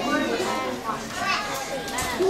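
Overlapping talk from several people, children's voices among them.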